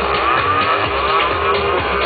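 Minimal techno DJ set played loud through a festival sound system, with a steady kick-drum beat. A swooping synth line glides up and down in pitch over the beat.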